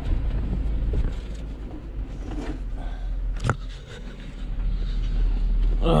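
Low, steady rumble of a truck's idling engine heard from inside the cab, with rustling and knocking of things being handled and one sharp knock about three and a half seconds in.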